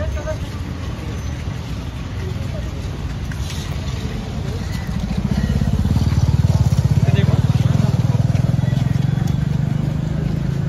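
A motor vehicle engine running close by, a low even pulsing that grows louder about halfway through, over street noise and scattered voices.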